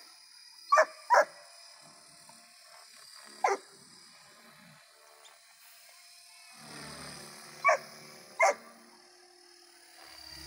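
A dog barking five times: two quick barks about a second in, a single bark a couple of seconds later, and two more near the end.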